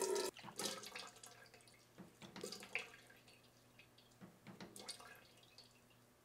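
Melted soy wax running from a wax melter's tap into a metal pouring pitcher cuts off suddenly about a third of a second in. It is followed by a few faint drips and small clinks into the pitcher.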